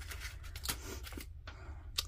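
Faint rustling with a few soft clicks as paper embellishment cards and packaging are handled by hand.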